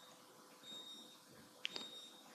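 Faint room tone with a thin, high-pitched electronic tone coming and going, then a sharp computer mouse click about a second and a half in as the path sketch is selected.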